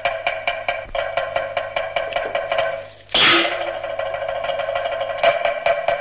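Cantonese opera percussion: a rapid, even wood-block beat of about five strikes a second, dropping out briefly before a cymbal crash about three seconds in, after which the beat picks up again.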